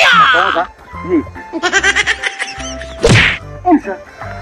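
A short comic musical jingle, then a single sharp whack, like a slap, about three seconds in.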